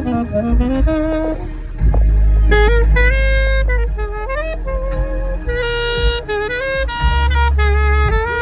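Alto saxophone playing a slow, expressive melody of held notes joined by slides and quick runs, with a deep bass from a backing track underneath.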